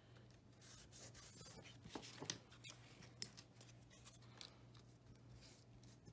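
Faint rustling and soft taps of paper scraps being handled and pressed down onto a tag, with one slightly sharper tap a little after three seconds, over a low steady hum.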